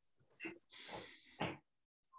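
Forceful controlled breathing during a karate kata: a short sharp breath, then a long hissing exhale lasting under a second that ends in a sharp burst of breath.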